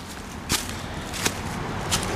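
Footsteps through dry fallen leaves on the forest floor: three steps, about two-thirds of a second apart.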